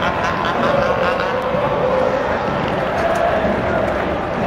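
Soccer stadium crowd, a dense continuous noise of many voices held at a steady level, with a drawn-out collective vocal sound wavering through it.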